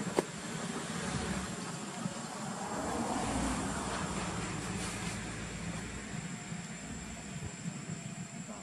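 Outdoor ambient noise: a low rumble that swells to its loudest about three seconds in and slowly fades, with one sharp click just at the start and a steady thin high-pitched whine underneath.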